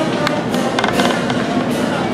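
A street brass band playing amid a noisy crowd, with a quick run of sharp cracks around the middle.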